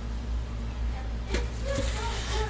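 Steady low hum, with two light knocks in the second half.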